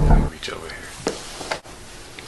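Background music with a steady pulsing beat cuts off abruptly just after the start. It leaves faint room noise with a few soft, short sounds, one about half a second in and two more around a second in.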